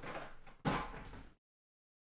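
Cardboard shipping case being handled and slid across the table: two short scraping noises, the second starting with a low thump. The sound cuts out abruptly about two-thirds of the way in.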